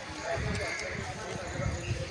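Footsteps of a person walking on a paved path, heard as irregular low thuds about two to three a second, with faint background voices.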